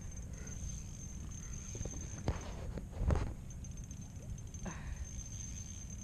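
Steady low wind rumble on the microphone, with a faint steady high whine and two short knocks, about two and three seconds in.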